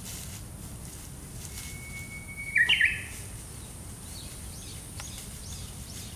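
A bird singing once: a thin whistle held for about a second, then a quick loud run of notes. Fainter, shorter bird calls follow near the end.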